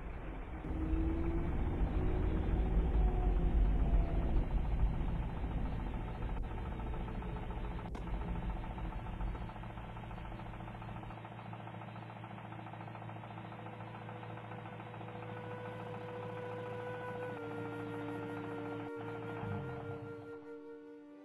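Old car's engine running as it drives, a low rumble that fades over the first half, under soundtrack music; steady held notes come in toward the end.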